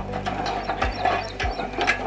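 Hand-turned steel drip-lateral winder clicking and rattling as its reel rotates, with a knock about every half second.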